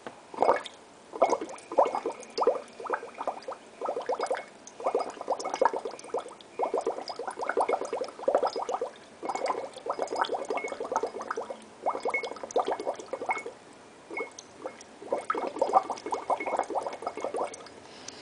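Air blown through a straw into a glass of water, bubbling and gurgling in repeated bursts of a second or two with short pauses between.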